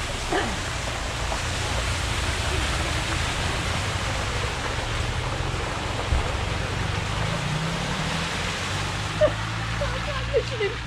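A car driving through floodwater on the road, its tyres swishing and spraying through the standing water over the low hum of its engine.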